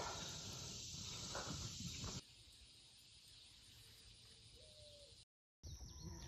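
Faint steady outdoor hiss that cuts off abruptly about two seconds in, followed by near silence with a brief moment of dead silence near the end.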